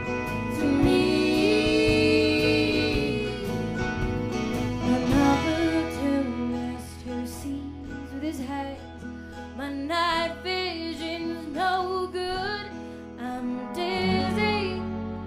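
Folk-americana band playing a song live, with singing over acoustic guitar and a steady bass line; long held notes give way to a wavering sung melody partway through.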